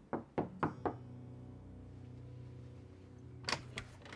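Knuckles knocking on a panelled wooden door: about four quick raps in the first second, then a few sharp clicks near the end.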